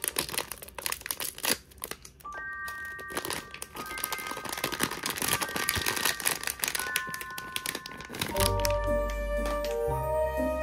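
Silver foil blind-box bag crinkling and rustling as it is pulled open by hand, over background music. The crinkling dies away near the end as the music turns fuller, with a bass line.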